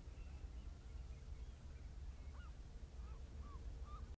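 Distant flock of birds calling faintly: many short, overlapping chirps and whistles, some sliding up or down in pitch, over a low steady rumble.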